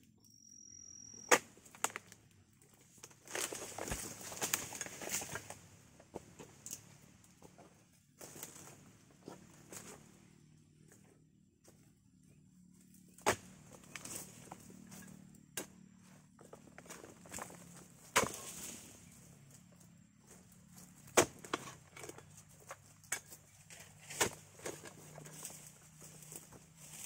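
Oil palm harvesting chisel (dodos) on a long pole striking and cutting into the base of an oil palm's fronds and fruit-bunch stalks: about half a dozen sharp knocks at irregular intervals, with a few seconds of rustling fronds in between.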